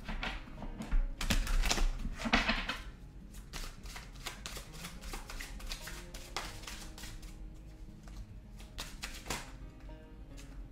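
A deck of tarot cards being shuffled by hand, loudest and densest in the first three seconds, then a few lighter card clicks, over soft background music.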